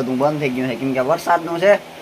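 Only speech: a man talking in Gujarati.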